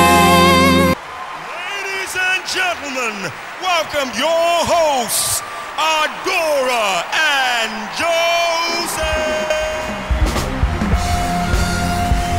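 A theme song cuts off about a second in, and a studio audience takes over, whooping and cheering, with voices rising and falling in pitch. Band music with a heavy bass starts up again near the end.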